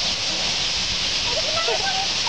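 A huge roosting flock of purple martins chattering all at once, a dense steady din of countless overlapping chirps. Scattered lower calls or voices stand out in the second half.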